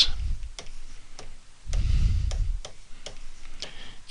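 Pen stylus ticking against a drawing tablet during handwriting: about eight light, sharp clicks, irregularly spaced. A low rumble sounds at the start and again around two seconds in.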